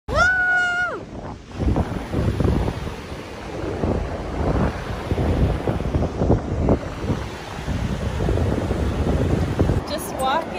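Ocean surf on a sandy beach with wind buffeting the microphone in gusts. In the first second there is a short, steady, high-pitched held sound.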